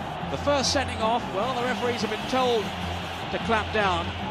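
A television commentator's voice over steady crowd noise from an old football match broadcast, with a faint steady low hum under it.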